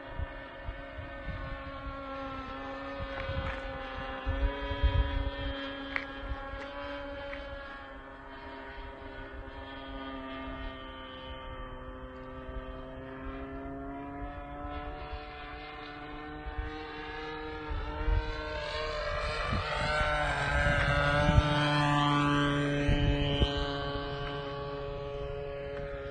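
Two-stroke O.S. Max .50 glow engine of a radio-controlled Extra 300S model plane droning in flight. Its pitch drifts slowly, and it grows louder with a rise and fall in pitch about three-quarters of the way through. Low rumbling thumps from wind on the microphone run underneath.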